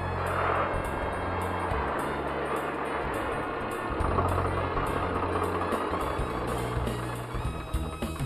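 Tractor engine running as the tractor drives along, mixed with background music that has a changing bass line.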